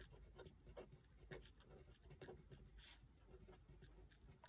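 Faint scratching of a felt-tip pen writing on a paper worksheet: a string of short, soft strokes as the letters are formed.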